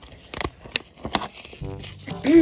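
Paper and cardboard handling: a few sharp clicks and light rustles as a small folded paper catalog is pulled from a toy box and unfolded. Near the end a short steady pitched tone comes in.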